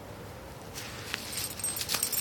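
A dog digging into a vole hole in a lawn: its paws scrape and claw at soil and turf in quick scratchy strokes that start about a second in and grow busier, with its collar tag jingling.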